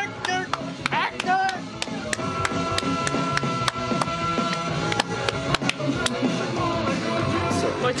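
Dance-punk song playing, with a fast, steady drum beat and guitar; a voice comes in briefly about a second in.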